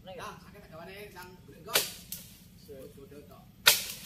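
Two sharp cracks about two seconds apart, the second one louder, amid faint talk during tree-felling work.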